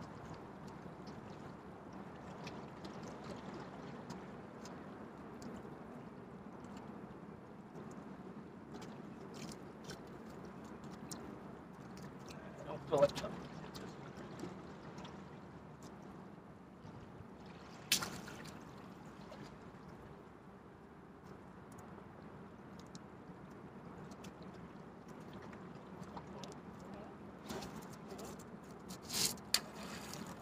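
Gentle water lapping at a rocky shoreline with light outdoor air noise, while a crab trap line is handled. A few sharp clicks and knocks, the loudest a little before and a little after halfway, and a cluster of louder knocks near the end.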